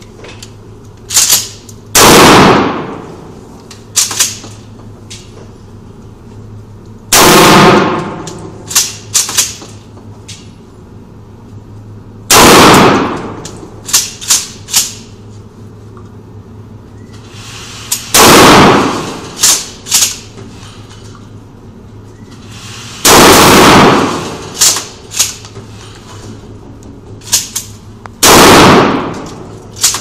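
Gunshots echoing in an indoor firing range: six very loud reports about five seconds apart, each with a long reverberant tail, with quicker, lighter sharp cracks of other shots in between.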